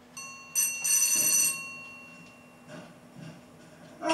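A bright metallic ringing tone like a small bell, starting just after the beginning, loudest around the first second and then fading away.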